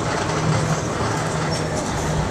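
Outdoor street ambience at a busy open-air sale: a steady rumble and hiss with a low drone that comes and goes.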